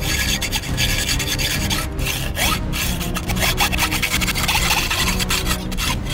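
Hacksaw cutting through black steel pipe clamped in a bench vise, the blade rasping back and forth in repeated strokes.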